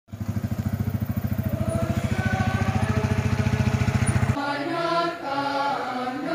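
Motorcycle engine running at low speed close by, a steady rapid pulse, with a group of voices singing faintly behind it. A little over four seconds in the engine cuts off suddenly, leaving a procession of people singing a hymn together.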